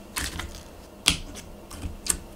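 Clear yellow glitter slime squeezed and kneaded in a fist, giving a few sharp sticky clicks and pops, the loudest about a second in.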